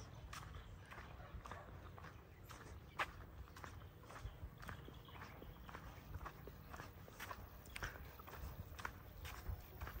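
Faint footsteps of a person walking on a concrete road at an even pace, roughly two steps a second, with one louder step about three seconds in.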